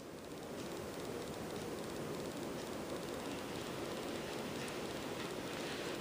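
A 52-inch Hampton Bay Renwick hugger ceiling fan running on high speed: a pretty quiet, steady whoosh of moving air with no ticks or wobble.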